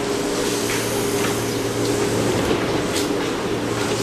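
JR East 205 series electric train standing at a station platform, giving a steady low hum with several even tones. A few faint ticks sound over it.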